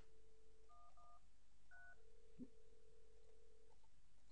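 Cisco IP softphone: a steady tone cut short by keypad touch-tones, three short two-note beeps, then a steady ringing tone for nearly two seconds as the test number is called.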